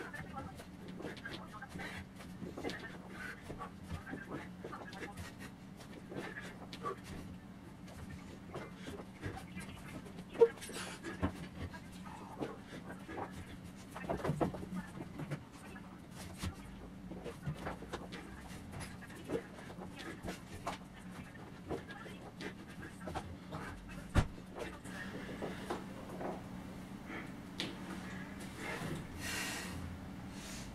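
A man panting and breathing hard from the effort of repeated sit-to-stand squats. There are scattered light knocks, two sharp clicks about ten and twenty-four seconds in, and a steady low hum underneath.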